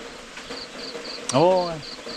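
An insect chirping in a steady rhythm of short, high pulses, about four or five a second.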